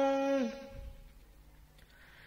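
A voice chanting Vietnamese verse holds the last note of a line, which dips in pitch and fades out about half a second in; the rest is a pause at near silence.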